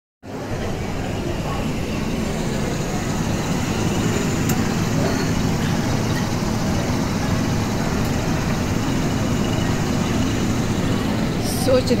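Steady low rumble and hum of restaurant background noise, beginning after a sudden cut at the very start and running evenly.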